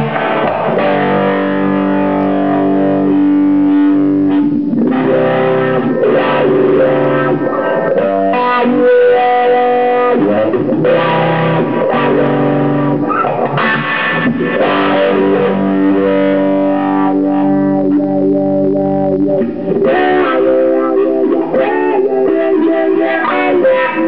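Electric guitar played through effects pedals: slow, ringing chords that change every second or two.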